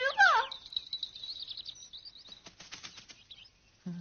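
Cartoon sound effects: high squeaky chirps at the start, then a thin high warbling trill, then a quick patter of light ticks a little past the middle.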